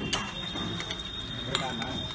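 Metal spoons clinking against stainless-steel bowls during a meal: a few light clicks, with two sharper clinks, one just after the start and one about a second and a half in.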